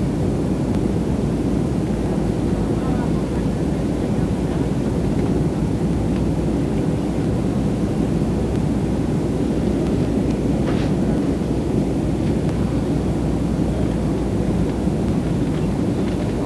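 Steady jet airliner cabin noise at a window seat: the low, even rumble of the engines and airflow while the plane is on its descent.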